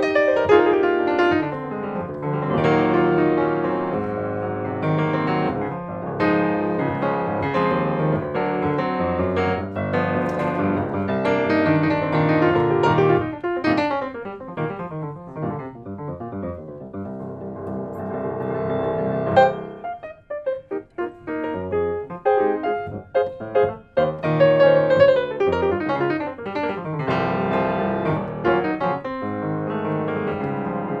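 Shigeru Kawai SK-3 grand piano played solo: full chords and fast sweeping runs, then a stretch of short, detached chords with gaps between them about two-thirds of the way in, before full playing resumes.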